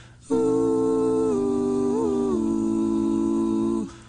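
Several young male voices humming a held chord together, stepping down in pitch about a second in and again just past the middle, then stopping just before the end.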